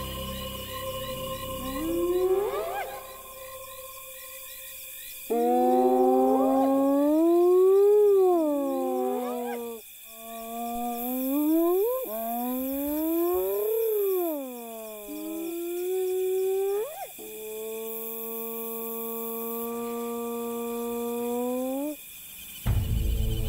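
Spotted hyenas whooping: a run of about six long, low calls that glide up and down in pitch. The last is held nearly level for about five seconds and rises at its end.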